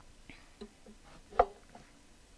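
Capo being fitted onto a ukulele neck: quiet handling, with one short knock and a brief ring from the strings about one and a half seconds in.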